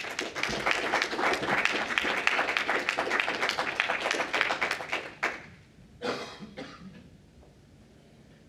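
Audience applauding for about five seconds, a dense patter of hand claps that dies away quickly.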